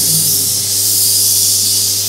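Handheld air-plasma pen running: a steady high-pitched hiss from its plasma jet, with a steady low hum beneath.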